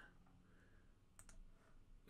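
Near silence broken by two faint computer mouse clicks close together, about a second in.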